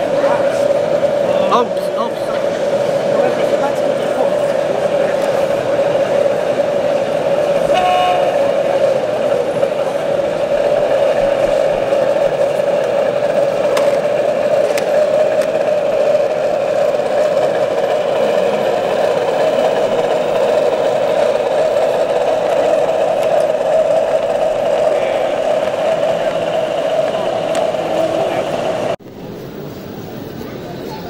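Steady whine of a model railway train's electric motor and gearing as it runs along the layout, its pitch sagging and then rising slightly with its speed, over the chatter of a busy hall. The sound cuts off suddenly near the end.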